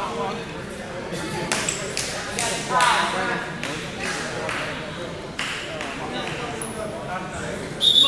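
Indistinct shouting from spectators and coaches, echoing in a large gymnasium, with a few short sharp sounds from the wrestling action. Just before the end a loud, shrill whistle starts.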